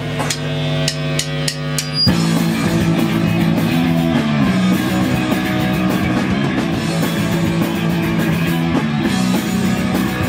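A live rock band in a small room: a held guitar chord rings with a few sharp clicks over it, then about two seconds in the full band of electric guitar, bass and drum kit crashes in together and plays on loud and dense.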